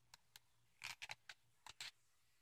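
Faint paper handling as a picture book's page is turned: a string of short clicks and brief paper rustles, the loudest just before the middle.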